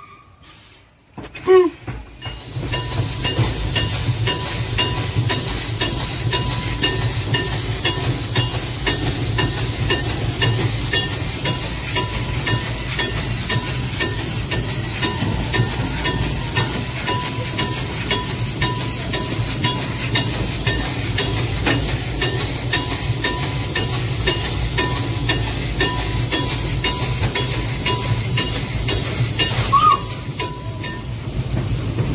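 Narrow-gauge steam tank locomotive heard from its footplate: steady hiss of steam with a low rumble and a fast, even ticking of about two to three beats a second. It follows a short quiet moment at the start with one brief loud sound.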